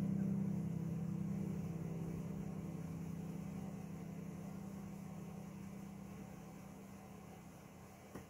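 The last chord of the song's instrumental accompaniment ringing out and fading steadily away, until it is barely audible near the end.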